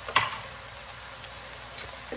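A sharp tap of a garlic press knocking against a wooden spoon as the garlic is pressed and scraped off, with a fainter tap near the end, over a faint steady sizzle of cabbage, beets and onion frying in the pot.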